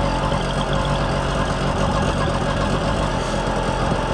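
Small two-stroke engine of a motorized bicycle running steadily while being ridden, holding an even hum with no change in revs.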